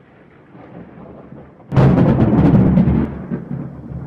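A logo-animation sound effect: a low swell builds, then a loud, deep cinematic boom hits just under two seconds in and dies away over about a second.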